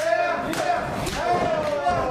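A man's voice talking, with a thud from the wrestling ring's mat near the start.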